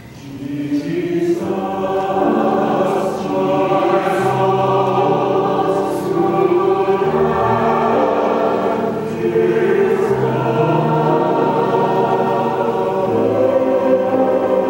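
Church choir singing an anthem, entering about half a second in and swelling to full voice within the first two seconds.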